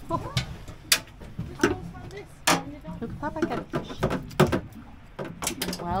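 Several sharp knocks and thumps on a boat's gunwale as a freshly caught cod is unhooked and handled against the rail, with quiet voices in between.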